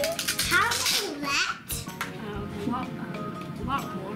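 Children's voices, without clear words, over steady background music.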